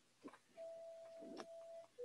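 Near silence with faint background music: one soft note held for about a second and a half, then cut off.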